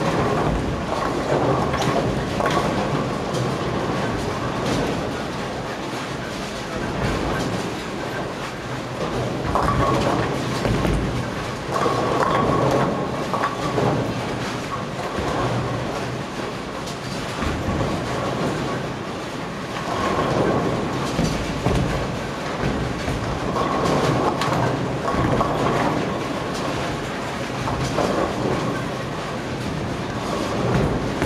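Bowling-centre din: bowling balls rolling down the lanes in a continuous rumble that swells every few seconds, with scattered knocks and clatter of pins being hit.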